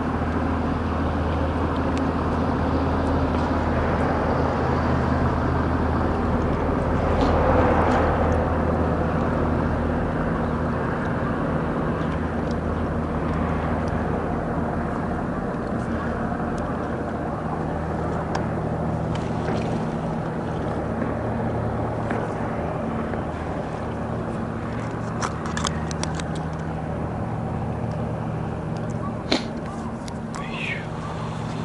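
Steady low engine drone with an even hum, swelling briefly about a quarter of the way in, with a few faint clicks near the end.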